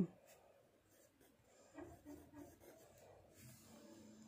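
Faint scratching of a pencil writing on a workbook page, with a few light strokes in the middle.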